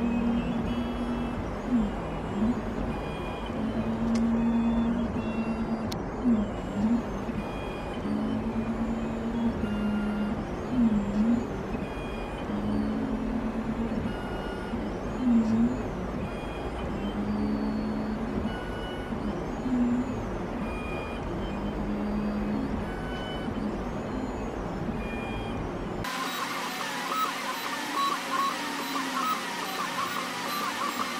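iDraw 2.0 pen plotter's stepper motors whining as they drive the pen carriage along each line. The pitch holds steady through a stroke and dips and climbs back at each change of direction, repeating every second or two over a steady hum. Near the end the low whine gives way to a higher, wavering whine.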